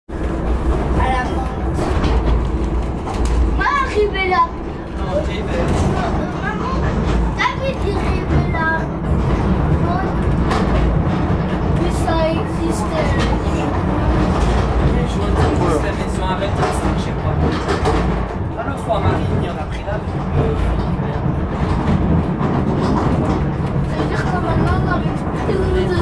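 Funicular car running on its track, heard from inside the car: a steady low rumble with frequent clicks and rattles. People's voices come in at times.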